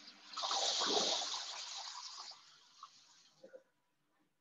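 Water gushing and splashing as the diorama's tipping tray empties its load down a channel toward a pool. It starts suddenly about a third of a second in and dies away over the next two seconds.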